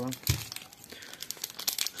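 Clear plastic wrapping of a soap-bar multipack crinkling as it is handled, with a soft knock just after the start.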